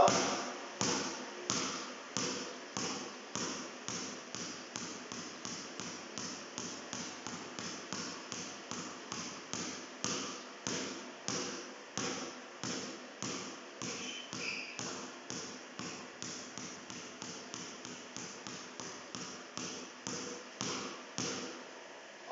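A basketball dribbled low and short on a hard court floor by one hand, a steady even bounce about two and a half times a second.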